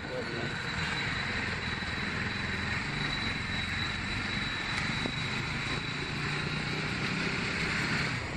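Bajaj Pulsar NS motorcycle engine running steadily while riding at low speed, with a thin, high, steady whine over the engine hum.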